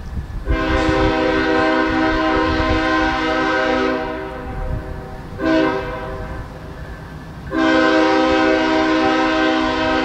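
Diesel locomotive's multi-note air horn sounding the grade-crossing signal: a long blast, a short one, then another long blast, over the low rumble of the locomotive's engine.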